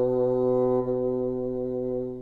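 Solo bassoon holding one long, steady low note, easing a little in loudness about a second in.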